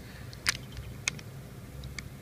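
Low steady room hum with a few short, sharp clicks. The loudest comes about half a second in and another just after one second.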